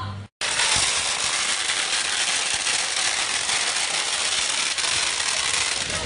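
A long string of firecrackers going off in one continuous, dense crackle of rapid small bangs, starting abruptly about half a second in.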